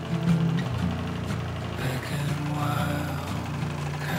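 Bernina electric sewing machine running steadily as it stitches fabric, heard with background music.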